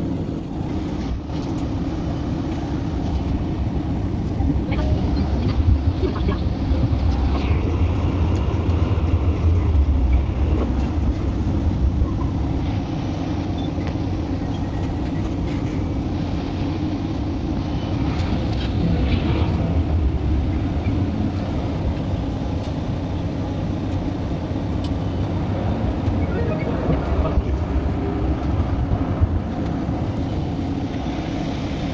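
An electric city tram running, heard from inside the car: a steady low rumble from the wheels and running gear that grows louder for a stretch in the first half.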